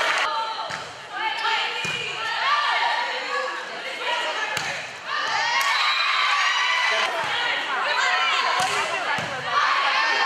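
Volleyball players shouting and calling out in a gym, over about seven sharp thumps of the ball being hit and bouncing on the hardwood court.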